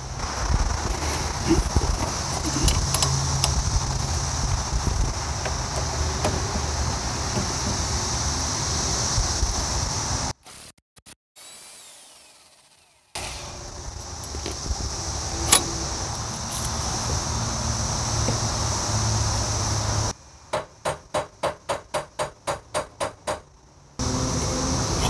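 Corded electric impact wrench running on the lower shock-fork bolt of a coilover, breaking it loose, with several short bursts near the end. Cicadas buzz steadily in the background.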